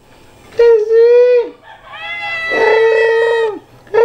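A young cat meowing twice, the first call short and the second longer, about a second and a half.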